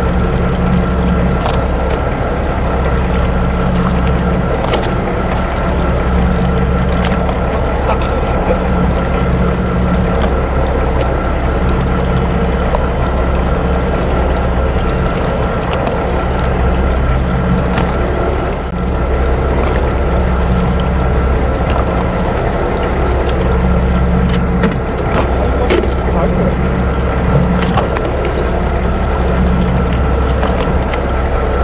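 A fishing boat's engine running steadily, a low, even drone with a constant tone over it.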